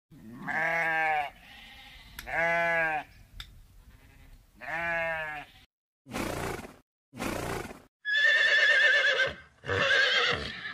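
A sheep bleats three times, each call about a second long. Then come two short breathy bursts and a horse's whinny, a long quavering call that starts about eight seconds in, with a second call beginning near the end.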